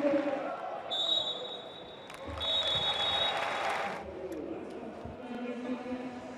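Stadium crowd noise with two long, high blasts of a referee's whistle, the first about a second in and the second just after two seconds in.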